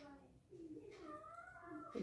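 Faint, drawn-out animal calls that waver in pitch: one tails off at the start, and a longer one begins about half a second in and lasts over a second.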